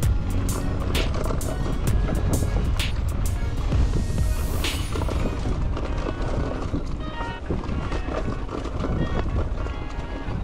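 Background music over the noise of a mountain bike riding fast down a dirt trail: a steady low rumble of tyres and wind on the microphone, with many sharp rattling knocks from the bike in the first half.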